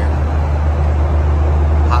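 Steady, loud low drone of an airliner cabin in flight: engine and airflow noise holding even throughout.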